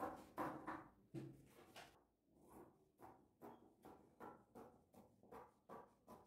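Scissors snipping through Ankara print fabric along a curved neckline: a faint run of short cuts, about two or three a second.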